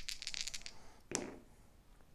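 Two six-sided dice rattled in the hand and rolled onto the play surface: fast clattering clicks that die away within the first second, then a single sharp click a little over a second in.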